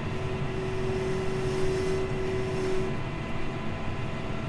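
John Deere 6155R tractor's six-cylinder engine running steadily under load while driving a topper through rushes, heard from inside the cab. A steady whine in the drone drops out about three seconds in.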